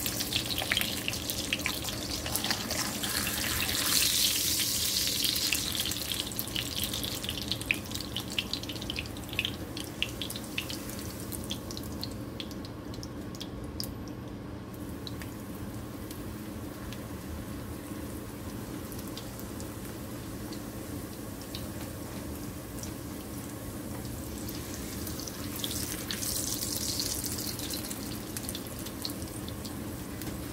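A tortilla frying in shallow oil in a small pan, the oil sizzling with small crackles, swelling a few seconds in and again near the end.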